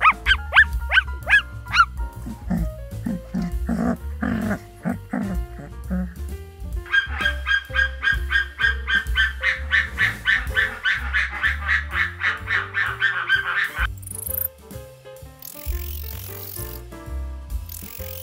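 Background music with animal calls laid over it. First comes a run of quick sweeping chirps, then a string of lower repeated calls. From about seven seconds to about fourteen seconds there is a fast, even pulsing call.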